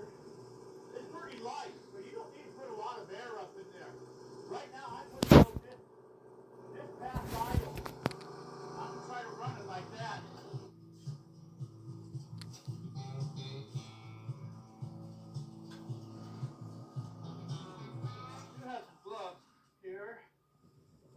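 Background television or video audio, with speech and music playing. A single sharp knock about five seconds in is the loudest sound, and a short noisy burst follows a couple of seconds later.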